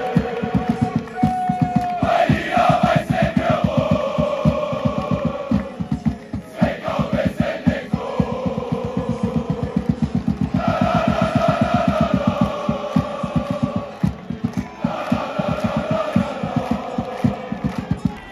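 Football supporters' block chanting in unison over a fast, steady drumbeat, the chant phrases breaking off briefly twice while the drum keeps going.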